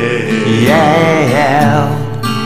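Multitracked acoustic guitars playing a slow soul ballad, with a wavering, vibrato-laden melody line over the accompaniment that glides down in pitch near the end.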